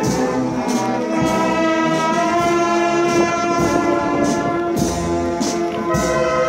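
A brass band plays a slow processional march: sustained brass chords punctuated by regular percussion strokes.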